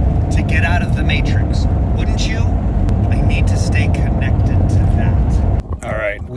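Steady road and engine rumble inside a car's cabin while driving, with faint talking over it; the rumble cuts off about five and a half seconds in.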